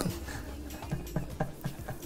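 Quiet, stifled laughter: a short run of breathy laughs in quick succession, about five or six a second, in the second half.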